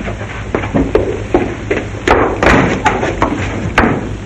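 Footsteps on a hard floor, a string of sharp knocks about three a second, over the steady low hum of an old film soundtrack.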